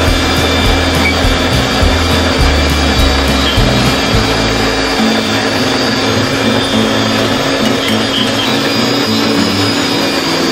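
Electric countertop blender running steadily as it blends fruit juice, with background music playing over it.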